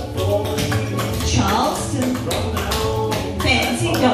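Clogging taps on a dancer's shoes striking the floor in quick rhythmic steps, over a recorded song with singing.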